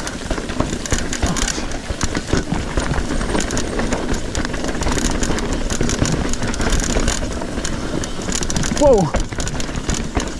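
Trek Fuel EX 7 mountain bike ridden down a rocky trail: a steady rushing noise with constant rattling and knocking as the bike runs over rough ground. A rider shouts "whoa" near the end.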